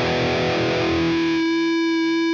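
Distorted electric guitar chord played through a Line 6 Helix, sustaining. About a second and a half in, plugin-generated feedback from Blue Cat Audio AcouFiend blooms out of the chord and settles into one steady, held feedback note.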